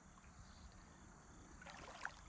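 Near silence: faint, steady ambience of shallow lapping water, with a brief faint sound near the end.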